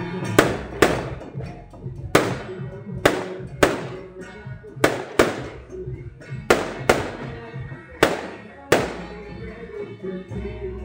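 Firecrackers going off in sharp single bangs, about a dozen of them, many in close pairs less than a second apart, each with a short fading tail. Music plays underneath.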